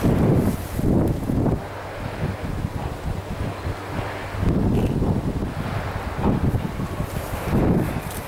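Wind buffeting the microphone in three gusts, a low rumbling noise that surges near the start, around the middle and toward the end.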